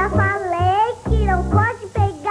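A young girl singing in a high, sliding voice over music with a steady bass beat.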